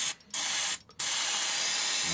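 Aerosol can of Fun String (silly string) spraying with a hiss: two short bursts, then a continuous spray from about halfway through.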